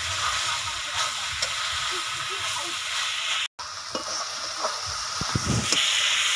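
Banana flower and potatoes sizzling in spice paste in a metal kadai as a metal spatula stirs and scrapes the pan: the masala being fried down (koshano). The sound cuts out for an instant about three and a half seconds in.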